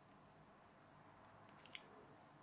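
Near silence: room tone, with two faint quick ticks near the end from a multimeter probe tip touching the metal connections of a laptop battery pack's cells.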